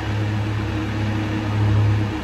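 Steady low hum of room background noise, even and unchanging, with no other event.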